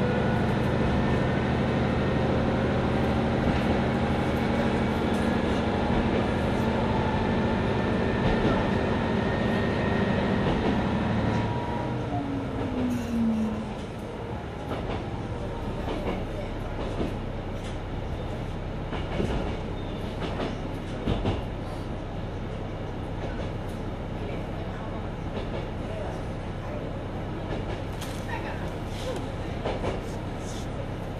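Mizushima Rinkai Railway MRT300 diesel railcar running: the diesel engine pulls with a slowly rising pitch for about eleven seconds, then drops away as power is shut off. The car then coasts with lower running noise and scattered clicks of the wheels over the rail joints.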